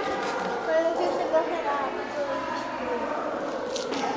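Indistinct background voices talking; no words close to the microphone.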